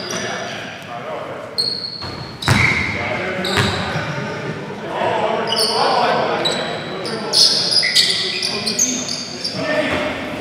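Basketball game on a hardwood gym floor: sneakers squeak in many short, sharp bursts and the ball strikes the floor with a few hard knocks, over players' voices calling out, all echoing in a large gym.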